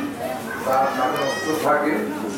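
Chatter of a seated crowd of women and children in a hall, with one high-pitched, drawn-out cry a little past a second in.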